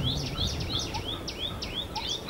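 A bird calling in a fast, even series of short high chirps, about four or five a second, over a low background rumble.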